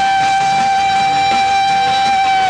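Live rock band in concert holding one long, steady high note over faint backing.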